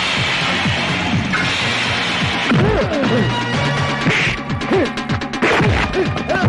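Film fight sound effects: repeated punch and crash impacts with swishes, thickening into a rapid run of hits near the end, over loud background music.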